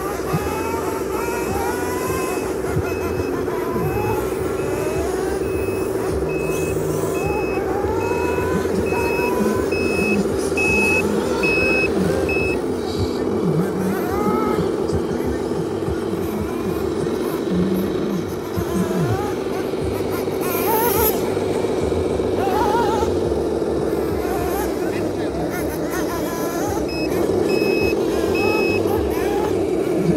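RC scale dump truck's sound module playing a steady simulated diesel engine drone with a repeating reversing beeper. The beeping runs for the first twelve seconds or so, stops, and comes back briefly near the end as the truck backs up again.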